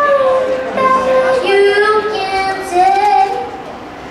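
A woman singing live with acoustic guitar accompaniment, mostly long held notes that slide from one pitch to the next; the phrase tails off near the end.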